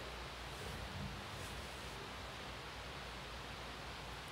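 Quiet, steady background hiss: room tone with no distinct sound events.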